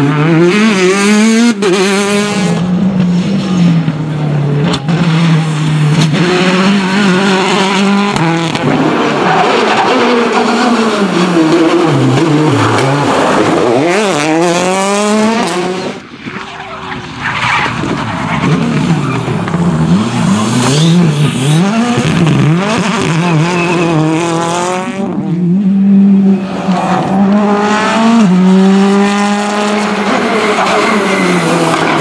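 Rally cars driven flat out, one pass after another. The engines rev up through the gears and drop back on each lift and shift, with tyres skidding on the loose road surface.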